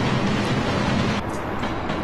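Train carriage running with a steady rumble and hiss. About a second in, the hiss drops away and a lower rumble carries on, with a few light clicks.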